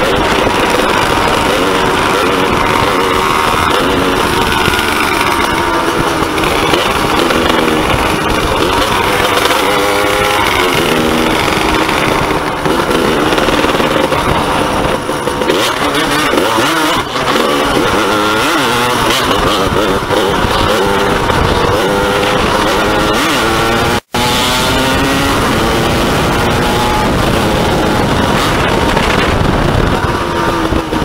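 Agrale 27.5's 190 cc two-stroke single-cylinder engine under way, its pitch rising and falling repeatedly as the throttle opens and closes through the gears, over wind and road noise. The sound drops out for a split second about four-fifths of the way through.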